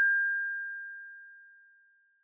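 A single high, steady synthesizer note left sounding after the rest of the track has stopped, dying away over about a second and a half.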